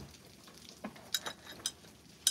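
A small handbag being handled and set on a shelf: a few faint, sharp clicks and light rustling over about a second, starting near the middle.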